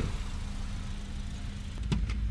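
Natural-gas-powered car's engine idling with a steady low hum, and a single sharp click near the end.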